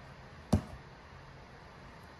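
Quiet room tone broken by a single sharp click about half a second in.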